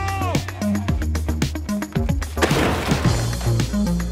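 Music with a steady beat and bass, broken about two and a half seconds in by a single crash of something being dumped into a metal dumpster.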